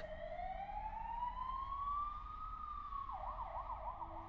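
Emergency vehicle siren, first a slow wail that rises over about two and a half seconds and falls again, then switching near the end to a fast yelp of quick up-and-down sweeps.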